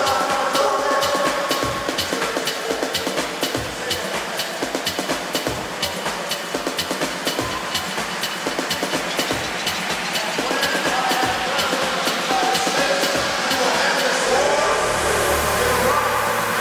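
Electronic dance music playing through a club sound system in a DJ mix, with a steady run of quick hi-hat ticks over melodic lines. Near the end a rising hiss sweeps upward and a deep bass comes in.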